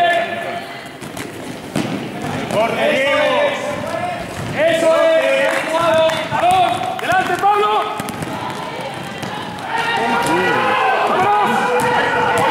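A basketball bouncing on an indoor court floor during play, with players' running footsteps and voices and calls carrying through a large sports hall.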